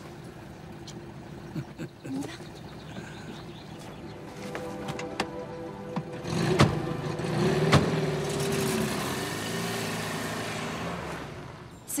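Two heavy thuds like car doors shutting, then a car's engine running and slowly fading as it drives away.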